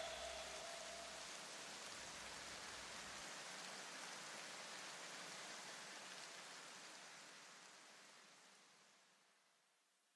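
Faint steady hiss that slowly fades away to silence near the end.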